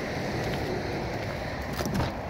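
Steady wind noise on the microphone: a low rumbling hiss with no distinct events.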